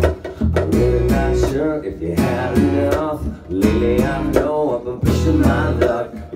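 Live acoustic rock band playing: strummed guitar over an electric bass guitar and a hand drum, in a steady rhythm.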